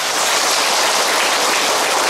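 A large seated audience applauding, many hands clapping at a steady level.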